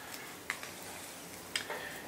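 A few small clicks from handling the parts of a rechargeable LED pocket flashlight: one about half a second in, then two close together near the end.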